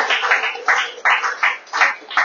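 A small audience applauding, with the separate claps clearly distinct.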